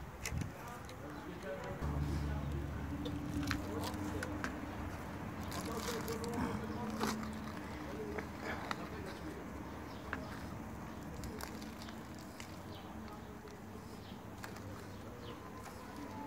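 Hands scooping and pressing potting soil into a plastic seed tray, with scattered soft rustles and light clicks of the tray. A low steady hum of unknown origin runs underneath for several seconds from about two seconds in.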